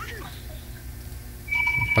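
An electronic phone tone starts about one and a half seconds in: a steady high beep with a fainter lower note, still sounding at the end. Before it there is only a low hum.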